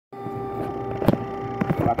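Steady cockpit hum of several held tones on a replayed recording of a Lockheed C-5 Galaxy's cockpit audio, with a sharp click about a second in; a crew voice starts to speak near the end.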